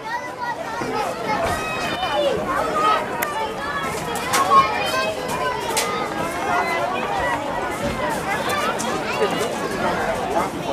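Sideline chatter from a youth football team: many overlapping voices of players and coaches talking and calling out at once, with no single clear speaker.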